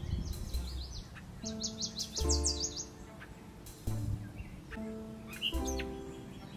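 Background music with held chords, over wild songbird song: a few short high chirps, then a rapid trill of about a dozen quick, high, down-slurred notes about a second and a half in, and more chirps near the end.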